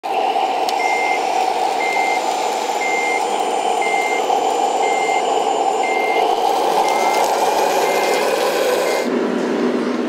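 Reversing alarm of an RC Liebherr crawler loader beeping about once a second, over a steady mechanical running drone. The beeping stops near the end.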